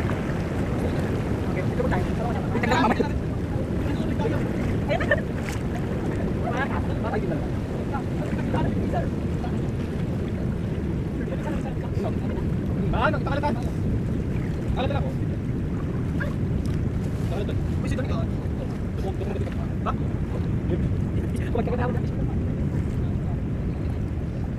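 Steady wind noise on the microphone over the wash of surf, with faint voices now and then.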